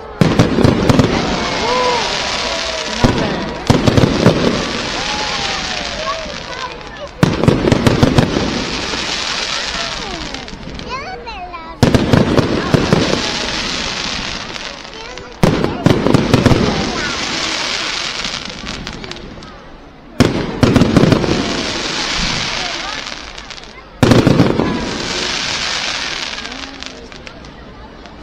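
Fireworks display: seven loud aerial bursts, one about every four seconds, each followed by a few seconds of fading crackle from the crackling stars.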